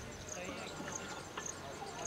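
Faint, distant talk among cricket players, with a couple of light clicks.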